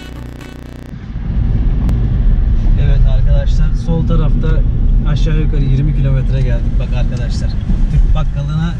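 Inside a small car driving on a wet street: steady low engine and tyre rumble, with indistinct talking over it. Background music cuts off about a second in.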